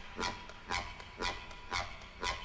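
Quiet breakdown in an electronic dance track with the bass dropped out: a short sampled hit repeats about twice a second, each one falling in pitch.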